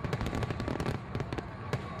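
Fireworks sound effect: rapid, irregular crackling pops over a low rumble.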